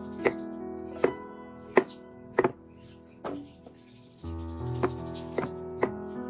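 Kitchen knife slicing peeled chayote on a wooden chopping board: a sharp knock of the blade on the board roughly every two-thirds of a second, about eight in all, with a short gap a little past the middle. Background music plays underneath and drops out for a moment around the same gap.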